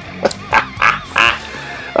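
A man laughing in about four short bursts in the first second or so, with background music running underneath.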